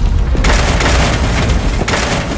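A deep rumbling boom sound effect. A crashing roar comes in about half a second in and lasts over a second, over a steady low rumble.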